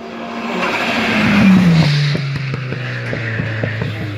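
A hill-climb race car passing at speed, its engine note dropping in pitch as it goes by, followed by a quick run of sharp cracks.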